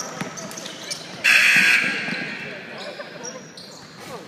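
A basketball being dribbled on a hardwood gym floor, the bounces echoing in the hall, among players' distant voices. A bit over a second in comes a loud burst of hiss lasting about half a second.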